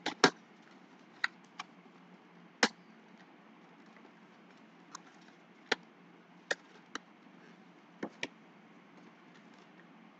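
Trading cards in hard plastic toploaders being handled and stacked: about ten sharp plastic clicks and taps at irregular intervals, the loudest just after the start.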